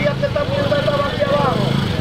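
A vehicle engine idling steadily, with voices talking over it.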